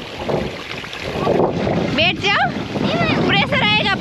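Water gushing from a farm water pump's outlet pipe and splashing onto the ground, a steady rush that grows louder about a second in. Voices come over it twice in the second half.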